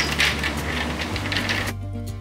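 Soaked pumpkin seeds being scooped by hand in a stainless steel bowl and spread on a metal baking pan: a wet rustling and clattering of seeds against metal. Near the end it cuts off suddenly and music takes over.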